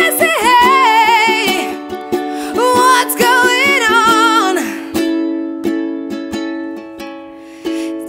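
A woman sings a held, wavering vocal line over a strummed ukulele. About halfway through, the voice stops and the ukulele chord rings on and fades under soft strums, picking up again near the end.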